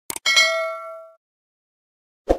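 Subscribe-button animation sound effect: two quick clicks, then a bright bell ding that rings out for about a second.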